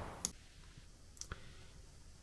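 A few faint, sharp clicks over near silence: one about a quarter-second in and a couple more a little after a second.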